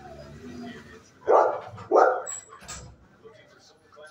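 A dog barks twice, loudly, about half a second apart, a little over a second in.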